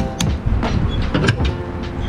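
Fuel filler cap being screwed onto a car's filler neck, its ratchet giving a few sharp clicks at the start, then a lighter knock as the fuel door is pushed shut, over a steady low rumble.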